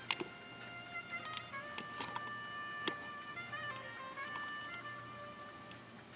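Faint music playing, a slow melody of held notes, with a few light ticks and clicks, one about two seconds in and a sharper one about three seconds in.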